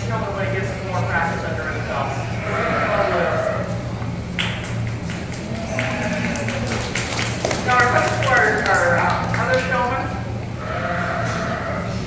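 Goats bleating in a show barn among background voices, over a steady low hum.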